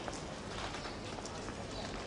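Street background noise with irregular light taps, like footsteps on pavement.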